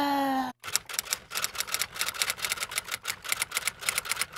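A woman's long held vowel, slowly falling in pitch, ends about half a second in; then a typewriter-key sound effect clacks in quick, irregular strokes, several a second.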